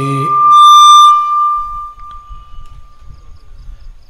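Microphone feedback through a sound system: a single high, steady whistling tone that swells very loud about half a second in, then fades away over the next two seconds.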